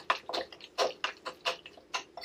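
Wet, chunky food of tuna, chopped egg and mixed ingredients being mashed and stirred in a ceramic bowl, in a run of short, soft strokes about three a second.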